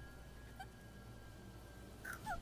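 Near silence: a faint steady high tone over a low hum, a lull in the anime episode's soundtrack.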